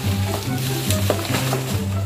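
Background music with a steady, repeating bass line, over a crackling, rustling noise of a banana plant's dry leaves and stalk giving way as it is pulled down by hand.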